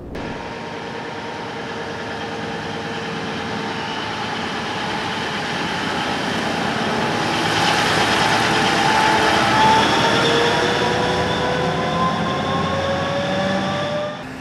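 A giant BelAZ mining dump truck driving past. Its engine runs with a whine that rises slowly in pitch, and the sound grows louder as the truck draws near, loudest about two-thirds of the way through.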